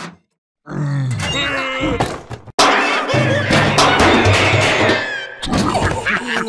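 Cartoon soundtrack: music with wordless grunting character voices, then, about two and a half seconds in, a sudden loud commotion of cartoon sound effects lasting about three seconds as the tin can bursts open.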